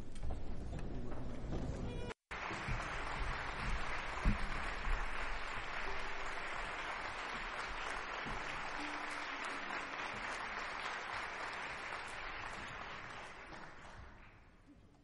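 Audience applauding steadily after a live concerto performance, broken by a brief dropout about two seconds in and fading out near the end.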